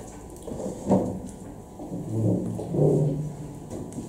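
Low, indistinct voice sounds, like a man murmuring or humming without clear words, after a brief sharp sound about a second in.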